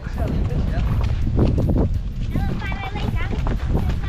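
Hoofbeats of a horse walking on a sandy dirt track under a steady low rumble of wind and movement on a rider-mounted microphone. A short run of high, rising calls comes a little after halfway.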